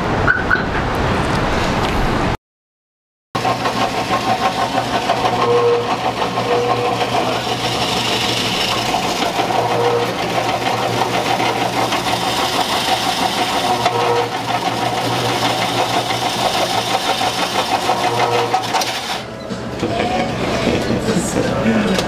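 Electric shave-ice machine running steadily, spinning a block of ice against its blade: a constant motor hum with a rough shaving noise over it. It follows a brief dead silence a couple of seconds in.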